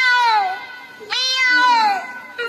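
Children imitating a cat, crying "meow" twice in chorus, each long cry sliding down in pitch.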